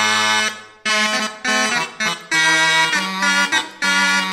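Consort of cornamuses, buzzing capped double-reed Renaissance wind instruments, playing a part-song in sustained chords with short breaks between phrases.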